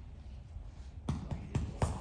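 Four sharp, short knocks in quick succession, starting about halfway in, over quiet hall room tone.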